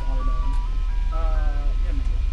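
Ice cream truck jingle: a simple melody of steady chime-like notes stepping from one pitch to the next, over a steady low rumble.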